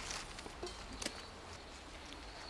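A couple of faint light clicks and crackles as burning sticks are lifted out of a clay coal stove, over a quiet outdoor background.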